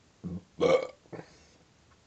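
A man burping once, briefly, a little over half a second in, with a fainter sound just before it.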